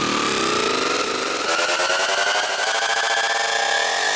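Psytrance breakdown with the kick drum and bass dropped out: a dense, buzzing synth texture with one line rising slowly in pitch, a build-up riser.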